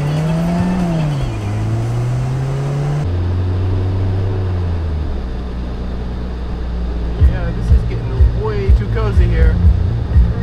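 Truck engine accelerating away from a stop, its pitch rising, dropping at a gear change about a second in, then climbing again. After an abrupt cut a few seconds in it runs steadily at cruising speed, and from about seven seconds a song with a thumping beat and a singing voice comes in over it.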